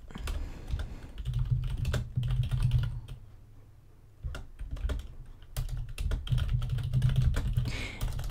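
Typing on a computer keyboard: a quick run of keystrokes, a pause of about a second, then more keystrokes.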